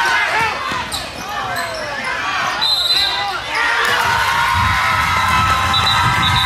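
Basketball game sounds in a gym: sneakers squeaking on the court, a ball bouncing and voices. A referee's whistle blows briefly about three seconds in and again near the end.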